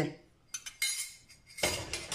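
Metal spoon clicking lightly against a small ceramic ramekin a few times, then a louder clatter of dishware near the end as the ramekin and spoon are set down.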